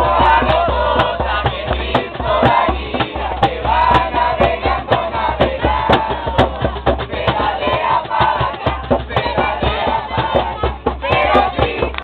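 A group of young voices singing a song together, with an acoustic guitar strummed along in a steady rhythm.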